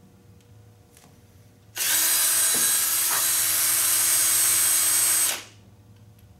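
Handheld cordless power saw running at a steady speed for about three and a half seconds, starting about two seconds in and winding down near the end.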